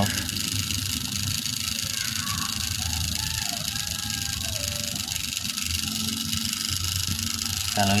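A steady low hum with an even hiss above it. Faint distant voices come and go in the middle.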